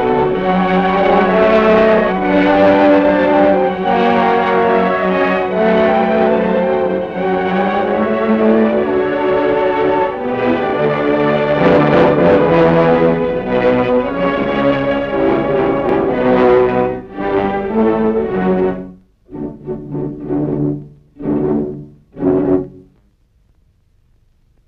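Orchestral film score with brass and strings playing sustained chords, breaking up near the end into a few short, separate chords before stopping.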